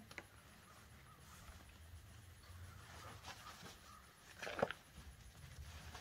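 Faint steady background with one short bird call about four and a half seconds in.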